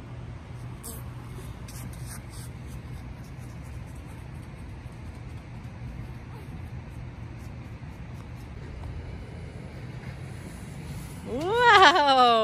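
A steady low hum under faint background hiss, with a few soft clicks in the first two seconds. Near the end a high-pitched voice rises and falls in a drawn-out exclamation.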